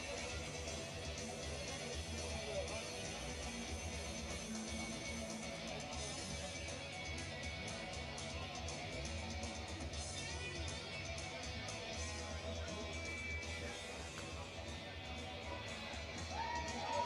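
Background music playing steadily at moderate level, with indistinct voices underneath.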